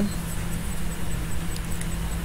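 Steady low hum with faint background hiss in a pause between speech.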